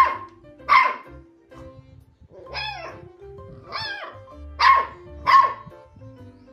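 A puppy barking: six short, high barks spaced roughly a second apart, over steady background music.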